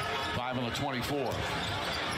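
Basketball being dribbled on a hardwood arena court, heard through the TV broadcast audio over the arena's crowd noise.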